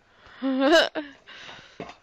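A person's short vocal cry, rising in pitch, about half a second in, followed by a brief soft hiss.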